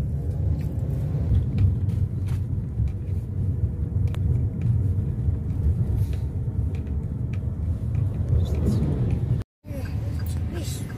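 Steady low rumble of engine and road noise inside a moving car's cabin. It breaks off for a moment near the end.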